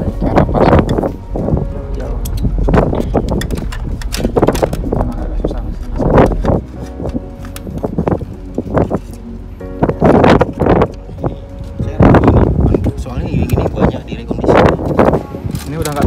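Indistinct talking with music in the background, over low wind rumble on the microphone, with scattered clicks and knocks of a plastic EPIRB being handled in its bracket.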